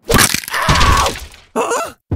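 A cartoon sound effect: a noisy, crackling burst lasting about a second and a half, followed near the end by a brief vocal sound.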